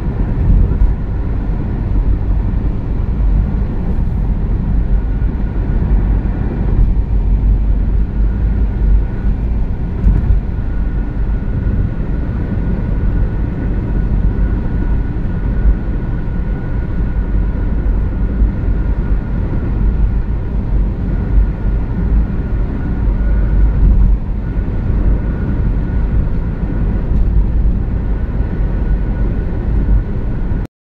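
Steady low rumble of a car at motorway speed heard from inside the cabin: tyre roar on concrete pavement together with engine and wind noise, with a faint steady whine above it.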